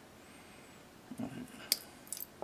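A single sharp click of small metal parts in a Tokyo Marui M&P gas blowback airsoft pistol's internal lower assembly as it is worked apart in the fingers, near the end, with a few faint handling ticks before it.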